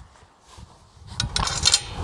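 Small metal fixings clinking against a metal mounting bracket and a solar panel frame as the nut, bolt and washer are handled into place. It is a quick run of sharp clicks in the second half.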